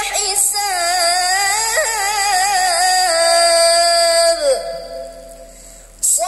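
A teenage boy reciting the Qur'an in the melodic tilawah style, holding one long ornamented phrase whose pitch wavers up and down. The phrase ends in a downward slide about four and a half seconds in, leaving a short quieter pause before the next phrase begins.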